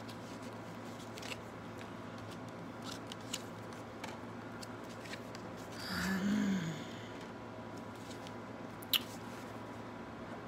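Faint clicks and light rustling of tarot cards being handled over a low steady room hum, with a short hummed voice sound rising and falling about six seconds in and a sharper click near the end.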